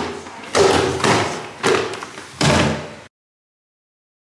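A hard-shell suitcase bumping down wooden stairs one step at a time, with flip-flop steps: a series of heavy thuds roughly every half second, cut off abruptly about three seconds in.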